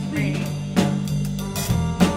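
Live band playing an instrumental funk groove: an electric bass line under drum-kit hits.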